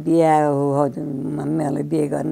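An elderly woman singing slowly in long, drawn-out held notes, her voice wavering a little.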